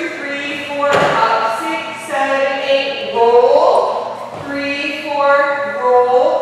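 A singing voice holding long notes of a melody, with a thud about a second in from a dancer moving on the floor.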